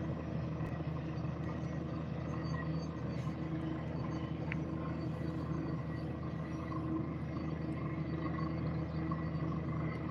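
Steady low mechanical hum at a constant pitch from a running machine, with no change in speed throughout.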